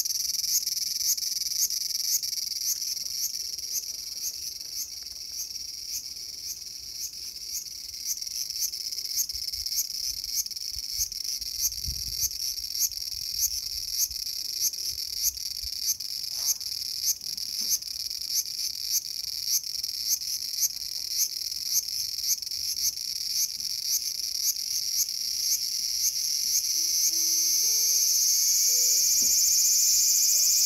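Cicada singing in a tree: a high-pitched pulsing call of about two pulses a second that merges into a continuous, louder buzz over the last few seconds.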